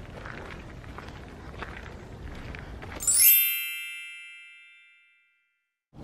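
Faint background for about three seconds, then a bright shimmering chime sound effect. It strikes suddenly with a quick high sweep, rings and fades away over about two seconds, and is followed by dead silence.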